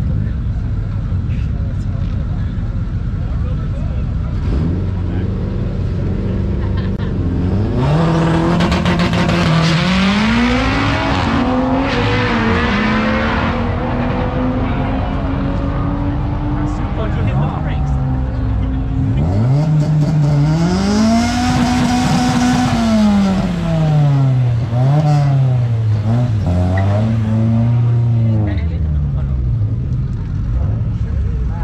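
Drag car idling at the start line, then launching: the engine note climbs in steps as it shifts up through the gears. Later the revs rise again to a held peak and fall back in steps. Crowd chatter runs underneath.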